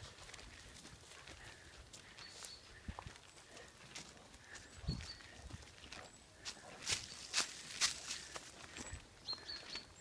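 Footsteps on a dirt path scattered with dry leaves and twigs: irregular crunching steps that grow louder and closer together in the second half.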